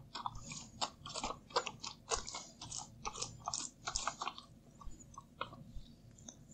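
Paint roller cover being rolled back and forth through paint in a paint tray to load it: a faint sticky rolling sound in repeated short strokes, about two a second.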